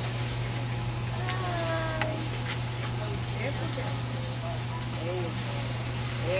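Faint background voices, a few short rising-and-falling calls, over a steady low hum.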